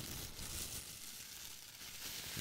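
Clear plastic bag crinkled and squeezed in the hand close to a microphone, a steady crackling rustle.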